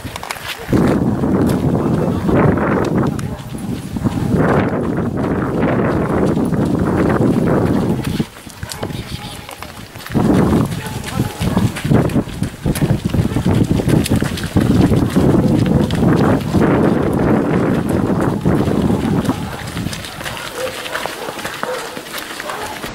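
Indistinct voices over the footfalls of canicross runners and their dogs passing close by.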